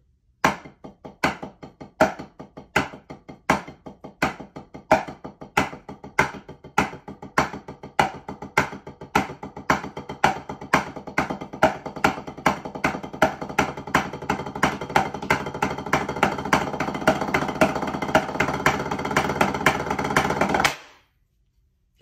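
Drumsticks playing paradiddles (RLRR LRLL) on a marching tenor-drum practice pad, the accents struck on the neighbouring pads so that a louder tap stands out at a steady interval. It starts slow and speeds up steadily into a fast, even stream of taps, then stops abruptly about a second before the end.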